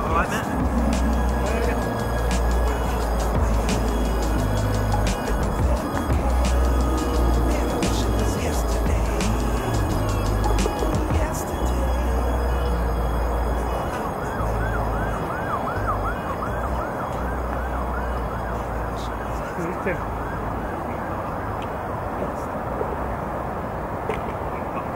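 Wind buffeting the microphone, a low rumble that comes and goes. Past the middle there is a quick run of short rising-and-falling chirps, a few a second.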